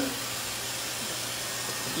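Dyson hair dryer running steadily, a rushing hiss of blown air with a faint low hum under it.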